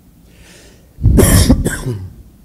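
A person coughing, a short double cough starting about a second in.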